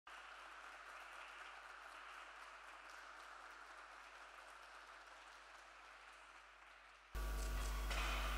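Faint applause, steady, with scattered light claps standing out. About seven seconds in it cuts off abruptly and a louder steady low electrical hum takes over.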